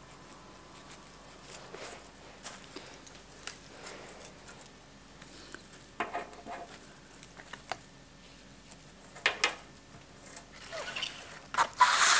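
Soft rustling and light clicks of flower stems and sprigs being handled and pushed into a floral arrangement, with a couple of sharper clicks about six and nine seconds in and a louder knock and rustle near the end.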